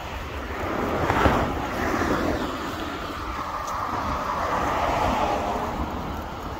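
Cars passing on the road beside the sidewalk, their tyre noise swelling about a second in and again near the end, over wind rumble on the microphone.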